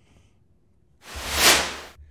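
A whoosh transition sound effect: a rush of noise that swells up about a second in and dies away, with a low hum starting beneath it.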